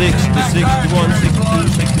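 The engine of a 1950 Ford F1 rat rod pickup running under way, heard inside the cab as a steady, heavy low rumble under a man's voice.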